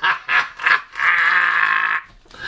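A man's wordless, high, nasal vocal sounds: a few short bursts, then one long held sound from about a second in.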